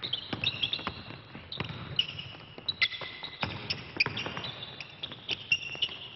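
Basketball players running a play on a gym floor: repeated thuds of the ball bouncing and being passed, with many short, high squeaks of sneakers on the hardwood.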